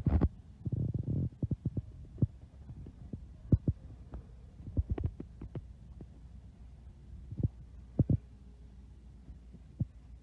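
Irregular low thumps and knocks from a handheld camera being carried and handled while walking, loudest near the start, over a faint steady low hum.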